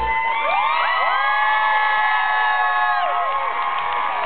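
Audience cheering and whooping, many voices rising into long held calls that drop away about three seconds in.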